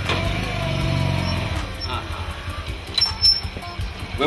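Small motorcycle running as it rides past close by, loudest about a second in and then fading away. A brief sharp sound comes about three seconds in.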